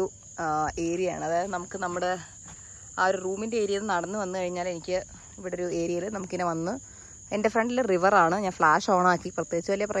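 Crickets keeping up a steady high-pitched chorus, under a person's voice that comes and goes in stretches through most of the time and is louder than the insects.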